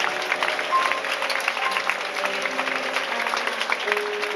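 Audience applauding with many hands clapping, while a few held instrumental notes carry on underneath.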